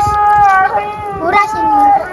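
A child's high, drawn-out 'ohhh' exclamations: two long held cries, one at the start and one near the end.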